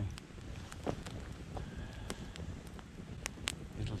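Wood campfire of sticks and logs burning, with scattered sharp crackles and pops over a low steady rumble.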